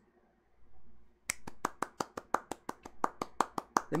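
A quick, even run of sharp clicks by hand, about five a second, starting a little over a second in after a short near-silence.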